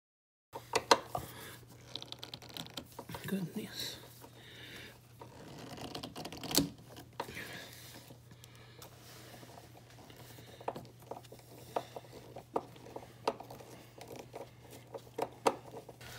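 Scattered light clicks, taps and rustling of hand work at a refrigerator door's bottom hinge and water line: a nut driver on the hinge's hex head screws, and a towel being handled. A steady low hum runs underneath.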